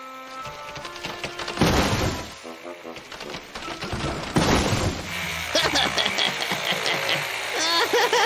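Cartoon soundtrack music with sound effects: two short noisy bursts about two and a half seconds apart, then a busier, louder run of quick clattering strokes, with a wavering voice-like sound near the end.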